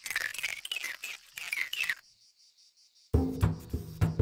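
Cartoon sound effects: quick high chirps and squeaks, many falling in pitch, for about two seconds. Music with a beat starts about three seconds in.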